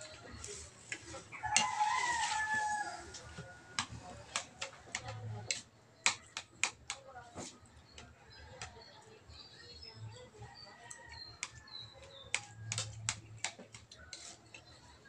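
Spoons and forks clicking and scraping on plates, with one loud crow from a rooster lasting about a second, starting a second and a half in.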